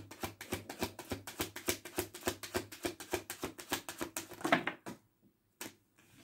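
A deck of oracle cards being shuffled by hand: a rapid, even patter of cards slapping against each other, which stops about five seconds in, with one last tap shortly after.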